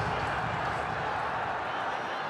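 Stadium crowd noise: a steady hubbub of many voices after a batsman hits a six.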